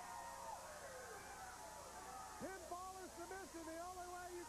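A man's voice talking or calling out, with held, drawn-out syllables in the second half.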